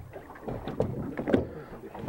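Wind and water noise on an open boat, with faint voices in the background.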